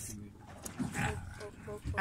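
Short bursts of laughter and soft voices.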